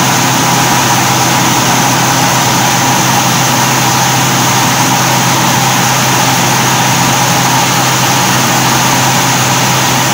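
Paddy-husking rice mill running steadily, a loud even mechanical drone with a low hum, while hulled rice streams from its outlet chute into a bucket.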